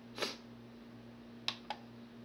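Two quick clicks of a computer mouse, about a fifth of a second apart, as the next photo is called up on screen. Before them comes a short soft noise, over a low steady hum.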